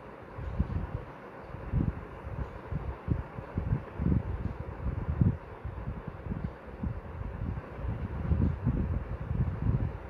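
Irregular low rumbling surges over a steady hiss, with microphone noise, like wind or handling, rather than any distinct event.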